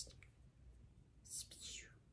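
Near silence in a pause of a woman's speech, with one short breathy hiss from her about a second and a half in, like a breath or a whispered sound.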